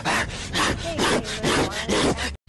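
Harsh, rasping strokes about twice a second, mixed with strained vocal sounds, from a gamer in close, distorted contact with his headset microphone.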